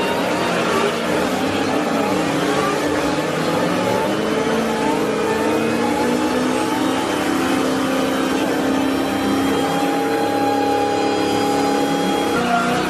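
Dodge V8 muscle cars doing burnouts: the engines rev hard and are then held at high rpm while the rear tyres spin in smoke.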